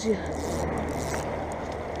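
Steady road-traffic noise: an even hiss over a low hum, with a faint click or two.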